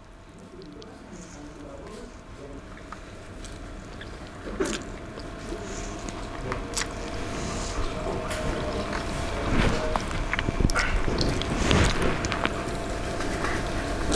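Close-miked eating of fried instant noodles by hand: quiet handling of the noodles at first, then chewing and wet mouth clicks that grow steadily louder and busier through the second half.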